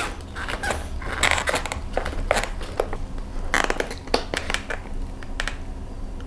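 A kitchen knife cutting through a large baked mooncake: a run of irregular crunching clicks as the blade breaks through the crust and dense filling.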